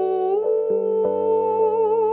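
A woman's voice humming one long held note that steps up slightly about half a second in and wavers with vibrato, over soft piano chords and a low bass note.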